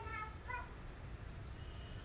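Two short high-pitched vocal calls, one right at the start and one about half a second in, over a steady low background rumble.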